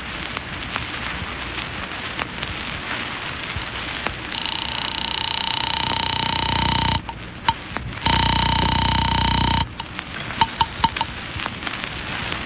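Telephone ringing as a radio-drama sound effect, over the hiss of an old recording: a ring starting about four seconds in, lasting nearly three seconds, a second shorter ring about a second later, then a few clicks.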